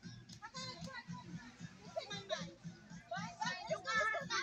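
A group of high-pitched voices chattering and calling out over one another, with background music keeping a steady beat underneath.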